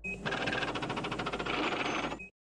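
Electronic glitch sound effect: a harsh, fast-stuttering digital buzz that cuts in suddenly with a brief high beep.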